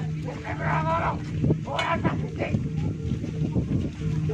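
A person's drawn-out moaning cries, a longer one about half a second in and a shorter one near two seconds, over a steady low hum.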